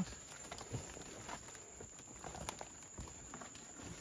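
Faint, scattered rustling, light taps and scrapes of people moving among leaves and over limestone rock while reaching for a coconut crab.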